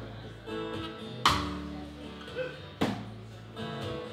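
Live country band playing an instrumental stretch between sung lines: strummed acoustic guitar over upright bass and drums, with two strong accented strokes about a second in and near three seconds in.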